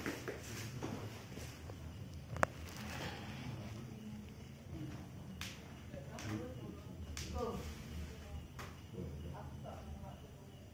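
Faint, indistinct voices with scattered soft knocks, and one sharp click about two and a half seconds in.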